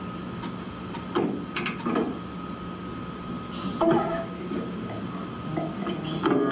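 Lull on stage before a band's next song: a steady amplifier hum through the PA, with a few soft knocks and brief, quiet plucked electric-guitar notes, one short snatch of notes about four seconds in.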